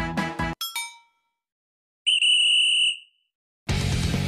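Background music cuts off abruptly, followed by a short ringing ding that dies away, then a single high electronic beep lasting about a second. Music with guitar comes back in near the end.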